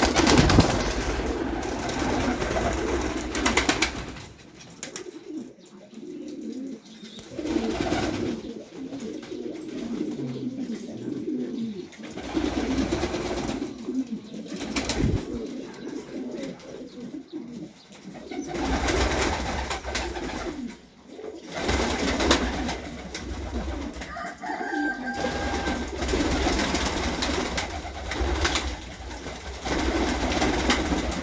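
Domestic pigeons cooing in repeated bouts a few seconds long, with short quieter gaps between them.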